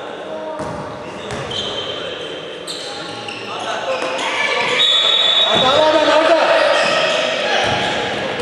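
Basketball being bounced on the court floor during play, echoing in a large gym, with players' and spectators' voices that grow louder from about halfway through.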